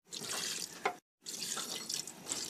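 Water poured in a stream into an aluminium pressure cooker onto browned mutton and onions, splashing in the pot, with a brief break about a second in.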